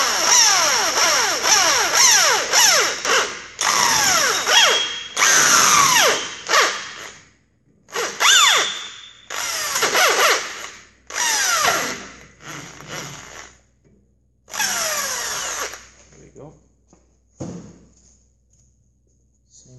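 Corded electric hand drill boring into a steel oil gallery plug in an air-cooled VW crankcase, to drill it out for removal. It runs in about eight short bursts, the trigger let off between them so the motor whine falls away each time before starting again.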